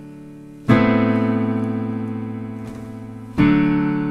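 Piano chords played as accompaniment for the listener to sing the vocal run over: one chord struck about 0.7 s in and held as it fades, then a second chord near the end.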